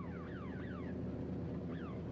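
A steady low engine hum with a high chirp that falls in pitch, repeated in a quick run in the first second and twice more near the end, like a car alarm.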